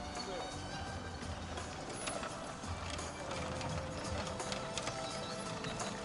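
Hoofbeats of a pair of carriage horses trotting, the knocks growing more frequent in the second half, over background music.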